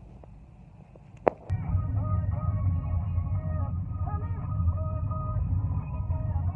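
A sharp click, then a car's engine starts up with a steady low rumble, and the car stereo comes on at the same moment, playing music over it inside the cabin.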